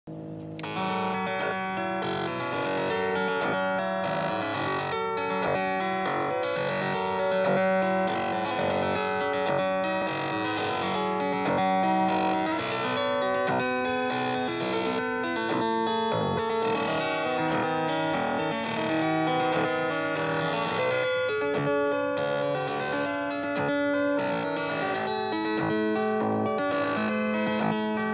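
Mutable Instruments Braids oscillator in its PLUK plucked-string mode, playing a fast repeating sequence of short plucked, harpsichord-like notes from a Super Sixteen step sequencer. The notes step up and down in pitch, and the pattern and tone shift as its knobs are turned.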